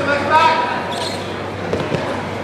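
Voices shouting in a gym hall during a wrestling scramble. Near the end there is a dull thud as bodies hit the wrestling mat.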